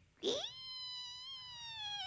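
A long, high-pitched call made as a cricket sound effect in a shadow-puppet show. It slides up quickly, holds one tone for over a second, then dips away near the end.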